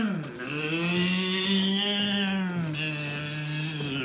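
A man's long, drawn-out wordless vocal 'aaah', held for about three seconds on one steady pitch and dropping a step near the end.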